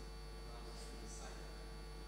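Steady low electrical mains hum in the recording chain, with a faint, indistinct sound around the middle.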